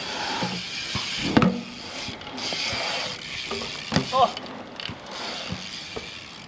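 BMX bike rolling on concrete, its rear hub freewheel ticking as the rider coasts, over a steady hiss of tyres and air, with a couple of sharp knocks about a second and a half in.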